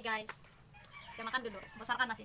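Domestic chickens clucking: one call right at the start, then several short calls in the second half.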